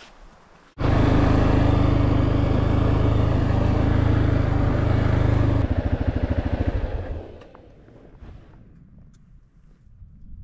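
A four-wheeler ATV's engine running close by. It comes in abruptly about a second in and runs steady, then near the six-second mark its firing breaks into separate pulses and dies away by about seven seconds in, as it is shut off.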